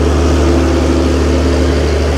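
An engine running steadily, a loud, even low drone with a constant pitch.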